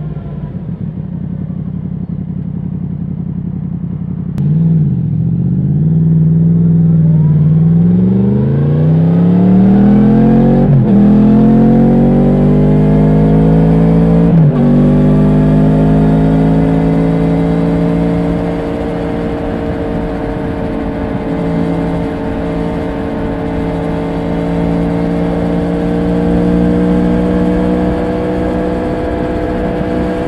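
Yamaha MT-10 crossplane inline-four pulling away and accelerating through the gears. The engine note climbs and drops back at each of several quick upshifts in the first fifteen seconds, then holds steady at cruising speed with wind and road noise.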